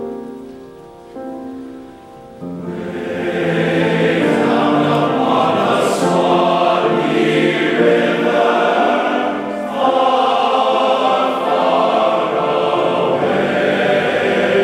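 A piano introduction of held chords, then a large men's chorus comes in about two and a half seconds in, singing loudly in full harmony.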